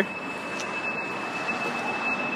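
Steady outdoor background hiss with a faint, steady high-pitched whine.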